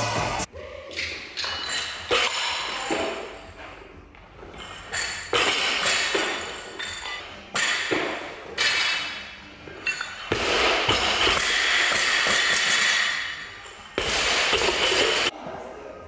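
A run of short, abruptly cut gym sounds, thuds and taps with bursts of noise, with music in places.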